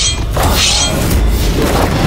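Dramatic background score with deep, continuous booming in the low end. A short burst of noise like a swoosh or crash comes about half a second in.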